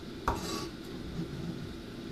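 A kitchen knife knocks once on a cutting board about a quarter second in, followed by a short scrape as chopped green onion is gathered up with the blade, then faint handling sounds.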